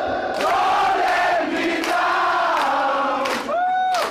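Crowd at a live gig singing along loudly in long held notes, with a few sharp claps or drum hits through it.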